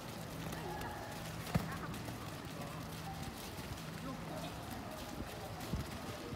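Soccer ball kicks and running footsteps on a wet dirt pitch, a scatter of short thuds, with one sharp kick about a second and a half in.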